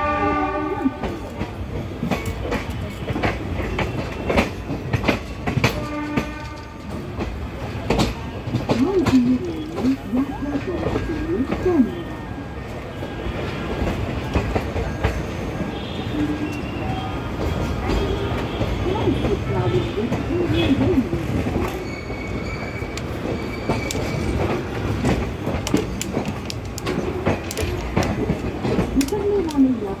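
Passenger train coach wheels clicking over rail joints and points as the express runs into the station, with a train horn sounding at the start and again about six seconds in. Thin high squeals from the wheels come and go in the second half.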